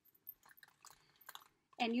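Faint crinkling and small clicks of cellophane wrapping and a plastic gift box being handled and packed.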